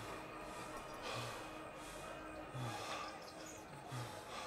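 A man breathing hard through the mouth: about three heavy breaths, each roughly a second and a half apart.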